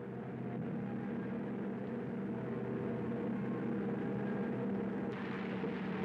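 A steady, low mechanical hum like a running engine, holding a few low tones. A brighter hiss joins about five seconds in.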